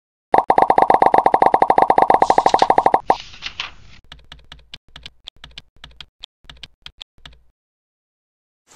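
A fast, even run of clicks with a buzzy tone, about a dozen a second for nearly three seconds, then a short hiss and a string of separate ticks, like typing, that thin out and stop.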